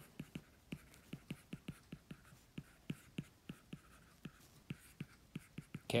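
Stylus handwriting on an iPad's glass screen: a run of quick, light, irregular taps, about four or five a second.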